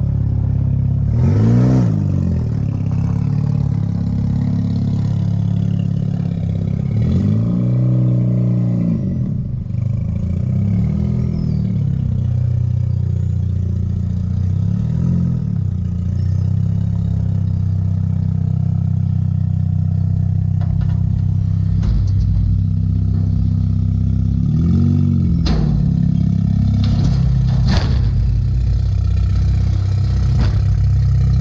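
Car engines running steadily, with the pitch sweeping up and down several times as the Mazda RX-8 with its catalytic converter cut off is driven around and up onto a trailer. A few sharp knocks come near the end as it climbs the ramps.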